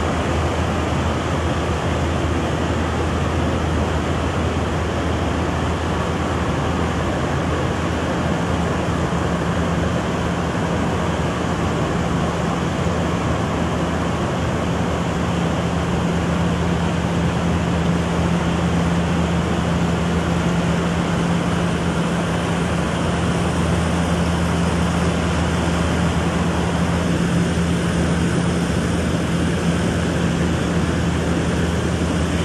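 Fast-flowing river water rushing, under the steady drone of a New Holland combine harvester's engine as the machine wades through the current; the engine hum grows stronger from about eight seconds in.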